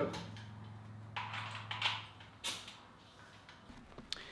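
A power tool being slid into a plywood cubby: short scrapes and a knock of the tool against the wood, over a steady low hum that fades out about two seconds in.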